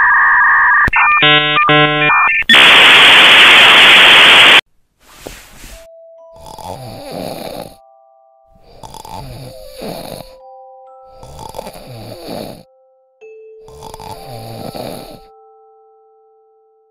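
Electronic beeping tones, then a loud burst of static. After that, four comic cartoon snores about two and a half seconds apart, with whistling tones held between them.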